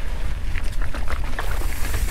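Scott Spark cross-country mountain bike riding down a rocky, loose trail. Wind and vibration make a steady low rumble on the mounted camera. Over it come irregular clicks and rattles as the tyres and bike hit stones and gravel.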